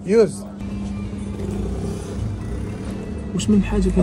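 A brief loud vocal exclamation right at the start, then steady street noise with road traffic that builds slightly before talk resumes near the end.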